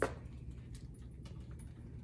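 A sharp click, then a few faint plastic clicks and rustles as an IV bag and its tubing are hung on an IV pole hook, over a steady low hum.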